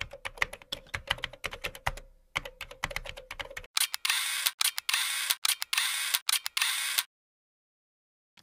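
Logo-animation sound effects: rapid, irregular typing-like clicks over a faint steady tone, then from about four seconds in denser hissing bursts broken by short gaps, cutting off a second before the end.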